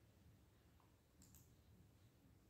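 Near silence with two faint, short clicks a little over a second in.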